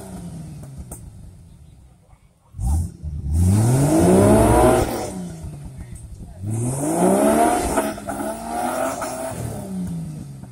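Off-road buggy's engine revving hard twice under load as it clambers over a log on a rocky, muddy track, each rev climbing steeply in pitch and then dropping back, with a quieter lull just before the first.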